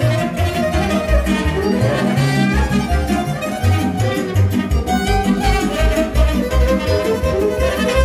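Live Moldovan taraf band playing an instrumental folk dance tune, a fiddle carrying the melody over a steady pulsing bass beat.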